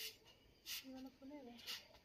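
Nearly quiet: three faint, brief brushing noises, with a faint pitched call in the background about a second in.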